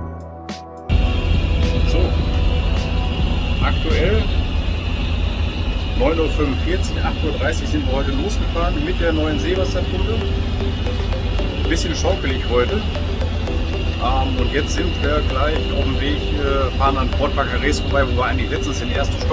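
Motor yacht engines running with a steady low drone, heard inside the cabin while underway, with a man talking over it. A short stretch of music cuts off about a second in.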